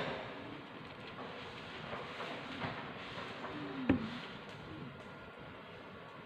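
Quiet room hiss with faint tabletop handling sounds as small bits of modelling clay are worked by hand, and one short sharp tap about four seconds in.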